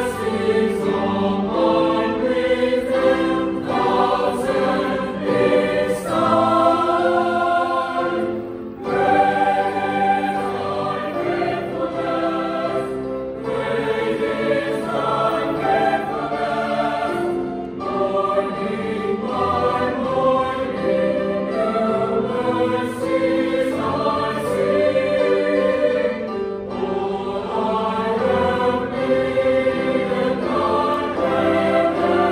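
A mixed choir of men's and women's voices singing in harmony, in sustained phrases with brief breaths between them.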